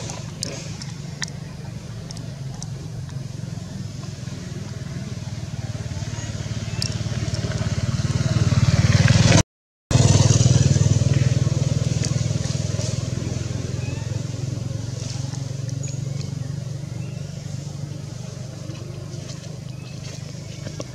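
A motor vehicle passing: its engine sound swells to a peak about halfway through, cuts out for a moment at its loudest, then slowly fades away.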